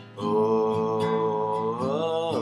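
A man's voice singing one long held note over a strummed acoustic guitar, the note sliding upward near the end.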